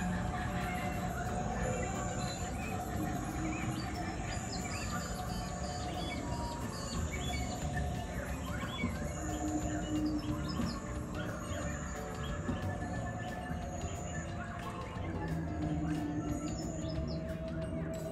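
An ambient music soundscape with a steady low drone, layered with bird calls: a short high whistle repeating about every second and a half and scattered chirps.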